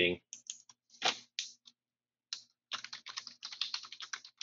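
Typing on a computer keyboard: a few scattered keystrokes, a short pause, then a fast, even run of keystrokes through the second half.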